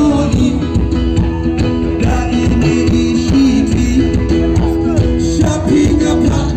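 A live band playing loud music with electric guitar and singing over a steady beat.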